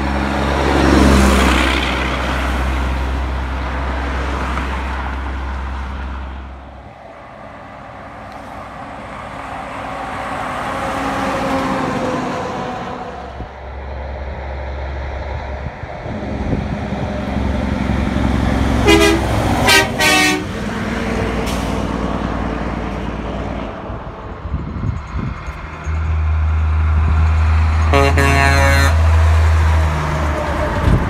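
Semi truck's diesel engine drones as it approaches and passes close, sounding its air horn: a quick series of short toots about two-thirds of the way through and a longer blast near the end as it goes by.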